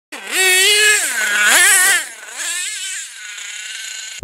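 Small nitro engine of a radio-controlled monster truck revving up and down in three bursts, loudest in the first two seconds. It then drops back to a fainter steady tone.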